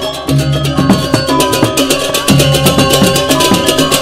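Balinese gamelan bebarongan ensemble playing a classical tabuh: five-key gangsa metallophones ring in fast, even strokes over low sustained tones, with a brief drop in the texture just after the start.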